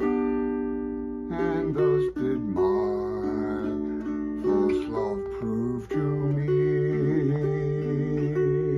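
Mountain dulcimer tuned D-A-a, strummed, playing a slow melody on the fretted string over the steady drone of the open strings.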